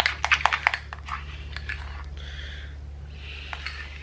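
A metal spoon in a ceramic bowl of thick Vegemite, butter and garlic spread. A run of quick clinks comes in the first second, then soft, sticky scraping as the paste is scooped and dropped. A steady low hum runs underneath.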